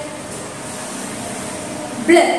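Steady background hiss, even and without distinct events.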